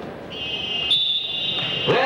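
A wrestling timekeeper's electronic buzzer sounds one steady, high-pitched tone for about a second and a half, growing louder partway through, then cuts off. It marks the end of the first period.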